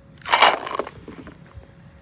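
Hollow plastic toy containers clattering and knocking against each other in a plastic basket: one loud rattling clatter lasting under a second, trailing off in a few lighter knocks.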